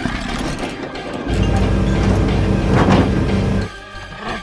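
Cartoon vehicle engine rumbling, a steady low drone that comes in about a second in and cuts off suddenly near the end, over background music, with a brief whoosh just before the engine stops.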